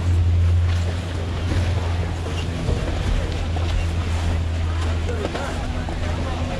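Steady low hum of a Leitner-Poma chairlift terminal's drive machinery, loudest in the first second.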